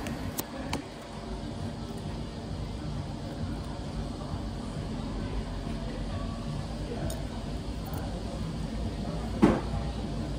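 Knife and fork working at a plate of breakfast, with a few light clicks, over a steady background hum and murmur of a café room. A brief louder sound comes near the end.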